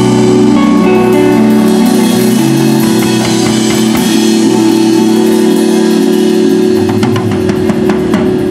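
Live blues-rock band playing loud: distorted electric guitars holding sustained notes over a drum kit, with a run of cymbal and drum hits near the end.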